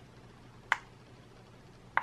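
Two short, sharp clicks a little over a second apart, the second near the end: the push button on a light-up phone case being pressed to switch its LED light on.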